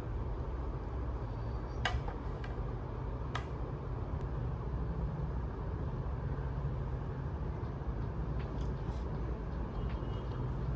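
Steady low room hum, with two sharp clicks about two and three and a half seconds in, as a ceramic bowl taps against a plate while food is served onto rice; a few fainter ticks follow later.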